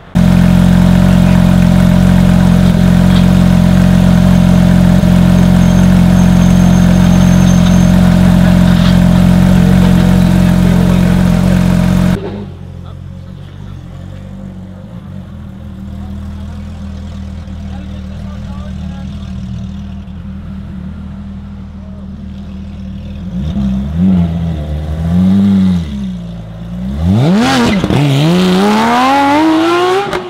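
Sports car engines: a loud, steady idle that cuts off abruptly about twelve seconds in, then a quieter idle. Near the end the throttle is blipped twice, and the engine note climbs steadily as a car accelerates away.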